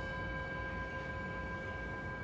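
A bell-like chime holding a steady, ringing tone made of several pitches at once. It marks the end of a timed pose hold.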